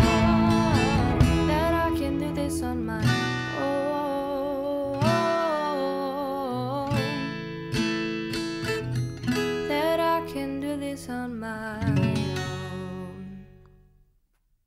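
Closing bars of an acoustic singer-songwriter song: strummed acoustic guitar under sung notes that gradually fade, dying out just before the end.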